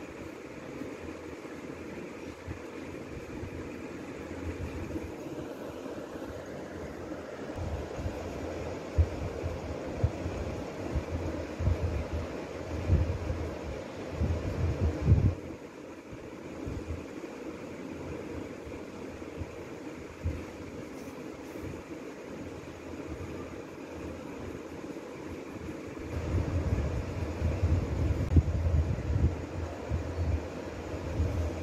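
Graphite pencil shading on a sketchbook page: irregular rubbing strokes heard as a low, scratchy rumble over steady background noise. The strokes get louder from about eight seconds in to about fifteen, and again near the end.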